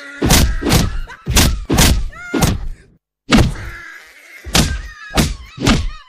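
Punches and blows landing in a fight: about nine heavy thuds in quick succession, with a brief pause about three seconds in.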